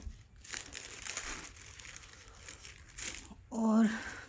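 Plastic packaging crinkling and rustling irregularly as a bag is handled inside it.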